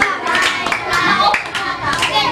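A group of children clapping their hands, with children's voices singing and calling out over the claps.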